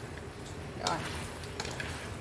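Duck tongues and pineapple sizzling in a frying pan while being turned with wooden chopsticks, with a few light clicks of the chopsticks against the pan. The liquid has nearly cooked off, leaving the fat to fry.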